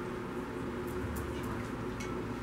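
Steady low room hum with a few faint, light clicks about a second in, as custard is spooned and poured into a glass trifle bowl.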